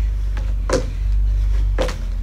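Feet landing on a wooden deck during side-to-side skier hops: two thuds about a second apart, with a fainter one before them, over a steady low rumble.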